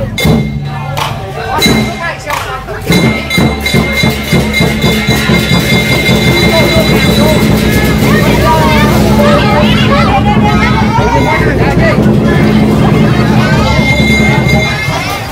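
Lion dance drum and cymbals beating fast and continuously from about three seconds in, over crowd voices.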